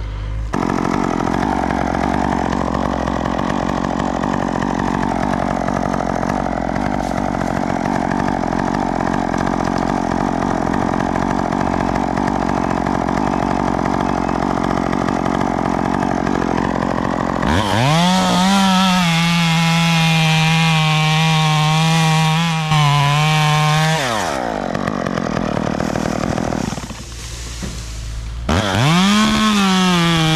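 Top-handle chainsaw running at a low idle, then throttled up to a high, steady whine about two-thirds of the way through for a cut of some six seconds before dropping back. It revs up to full speed again near the end.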